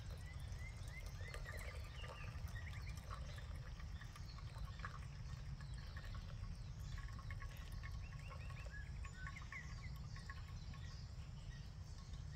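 Repeated short chirping calls from wild animals, coming in quick runs throughout, over a steady low rumble.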